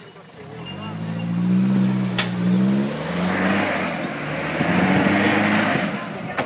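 Toyota Hilux 4WD engine revving under load as it climbs a rutted, washed-out dirt hill. The revs build over the first second or two, sag briefly about halfway, then rise again. A rushing hiss joins in from about halfway, with one sharp click just after two seconds.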